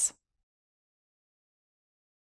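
Digital silence: the last syllable of a narrator's voice cuts off right at the start, and then the track is fully silent.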